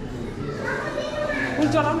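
Indistinct talk of several people with a child's voice among them, in a reverberant temple hall.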